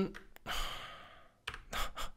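A long breath out near the microphone, with a few computer keyboard keystrokes just before it and again near the end.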